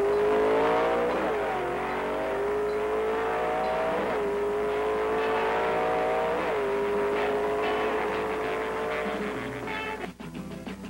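1960s Ford drag-racing car's 427 V8 accelerating hard down the strip. Its revs climb and drop back at three upshifts, about a second, four seconds and six and a half seconds in.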